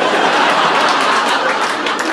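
Live audience laughing and applauding, a dense wash of many hands clapping and voices.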